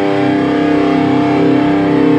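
Schecter C-1 Plus electric guitar holding one chord, ringing out steady and unbroken with no new picking, as the last chord of a metalcore riff; the recording is a little muffled.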